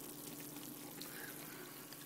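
Pot of soup with greens and onions cooking on the stove, a faint, steady hiss of simmering liquid, with a faint steady hum underneath.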